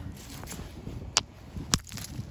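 Two sharp knocks of a hand-held stone striking a small rock set on a flat stone, about half a second apart in the second half, smashing the small rock into crumbs.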